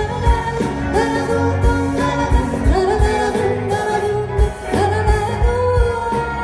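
A live band playing a song: a vocalist sings a melody of long held notes over electric guitar and a steady drum beat, amplified through the stage PA.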